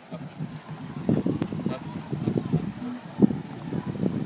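Irregular footsteps and thumps of a person and a leashed Doberman walking and trotting, with a few sharp clinks from the metal chain leash.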